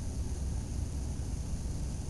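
Steady low-pitched room hum with faint hiss, and no distinct sound events.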